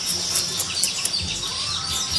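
Birds chirping outdoors: rapid, high-pitched short calls repeating several times a second over a steady high-pitched trill.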